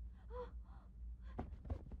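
A woman's short, startled gasp about half a second in, followed by a few faint clicks.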